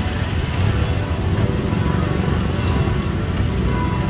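Street traffic noise, led by the steady low rumble of a close motorcycle tricycle's engine running in slow traffic, with music playing in the background.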